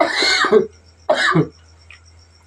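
A man coughing twice in short rough bursts, the second shorter and weaker.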